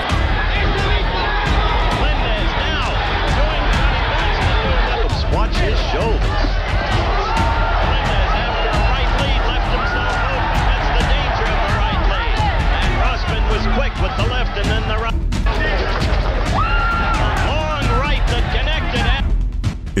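Boxing arena crowd noise and a ringside television commentator's voice from the original fight broadcast, under a steady background music bed. The sound drops out for a moment about fifteen seconds in.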